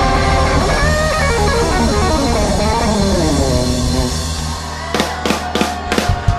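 Live rock band music: electric guitar notes bending in pitch over a held bass and keyboard chord. The low end thins out after about four seconds, and a few sharp drum and cymbal hits land near the end.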